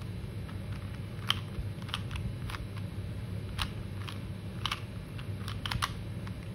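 Plastic 3x3 Rubik's cube being turned by hand: irregular, sharp clicks as its layers are twisted, about a dozen, bunching together near the end. A steady low hum runs underneath.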